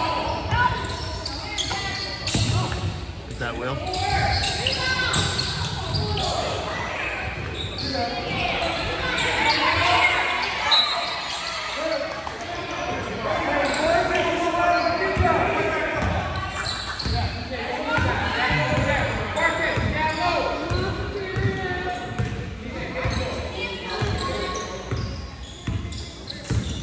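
Basketball dribbling and bouncing on a hardwood gym floor, with short knocks throughout, under indistinct overlapping voices of players and spectators echoing in a large gym.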